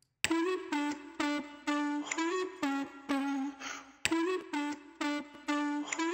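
A short melodic loop of quick pitched notes playing back through a hard-set Fruity Compressor at about 8:1, its fast timing giving the notes a distorted, clicky attack. The phrase starts about a quarter second in and begins again about four seconds in.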